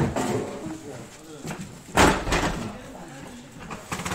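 A single loud impact on the lorry's trailer about halfway through, with a short ringing tail, amid people talking.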